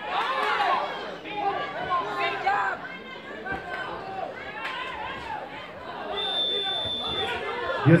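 Ringside spectators shouting and talking over one another, many voices at once. A single high steady tone sounds for about a second near the end.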